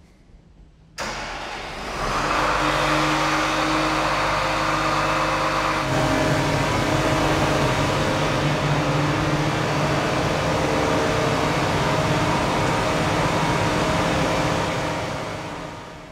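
Hesston WR9900 self-propelled windrower's diesel engine started up: a short crank about a second in, then it catches and runs steadily. The engine note shifts to a new steady pitch about six seconds in.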